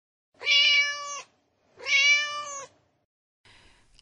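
A domestic cat meowing twice: two drawn-out, even-pitched meows of just under a second each, about half a second apart.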